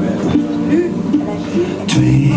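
Live music from a small acoustic ensemble with cello and harp, playing sustained notes under a moving melody. A short, sharp hiss comes just before the end.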